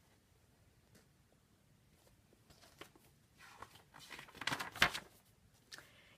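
Near silence at first, then soft rustling and handling noise from a hardcover picture book being held up and moved, starting about two and a half seconds in and loudest near the end.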